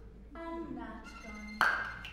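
A short vocal phrase, then a sharp percussive hit with a brief ringing tail about a second and a half in; the hit is the loudest sound.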